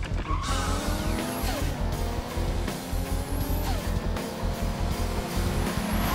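Music with a heavy bass beat over sports car engines revving and rising in pitch through the gears, with tires squealing as the cars race. Near the end a loud rush of noise as a car passes.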